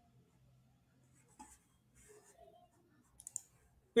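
Near-silent room tone with a few faint, short clicks, a cluster of them near the end.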